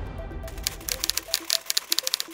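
Typewriter-style typing sound effect: quick, sharp key clicks, several a second, beginning about half a second in, over soft music.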